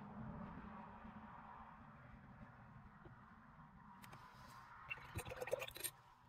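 Faint rustle of a paintbrush working gouache on a watercolor postcard over a low room hum, then a brief cluster of sharp clicks and taps from the brush being handled near the end, stopping suddenly.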